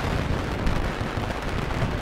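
Loud, steady crackling and rumbling noise, dense with tiny pops.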